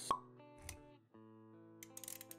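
Intro jingle of held musical notes, with a sharp pop sound effect just after the start and a softer low thump about two thirds of a second in; the music drops out briefly around a second in and then resumes.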